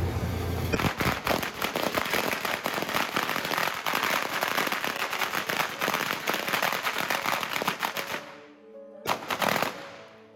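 A string of firecrackers going off in a rapid, dense run of pops starting about a second in and lasting roughly seven seconds, then stopping abruptly, followed by one short final burst near the end.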